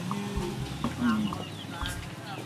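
Birds calling: a few short, scattered calls with quick rises and falls in pitch.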